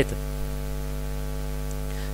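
Steady electrical mains hum with a buzzy stack of overtones, unchanging throughout, picked up in the narration's recording.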